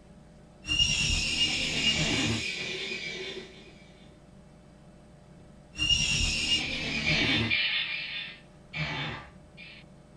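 A recorded horse neigh played back twice through Logic Pro's Space Designer convolution reverb: each high pitched whinny sags slightly in pitch and trails off into a long reverb tail. Two short, weaker fragments of horse sound follow near the end.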